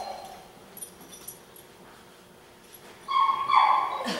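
A dog whining and yelping. High cries come near the end, in two short pulses that fall slightly in pitch. Before that, the lane is quiet apart from a few faint clicks.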